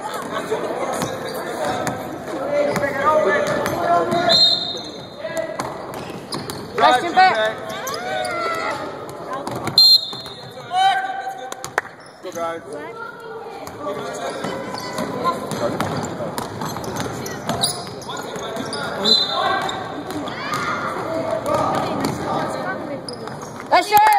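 Basketball bouncing on a wooden gym floor during play, amid players' and bench voices in a large echoing hall.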